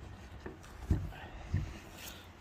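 Soft handling sounds of gloved hands pulling a sweet potato out of a leather shoe, with three faint dull knocks over a low rumble.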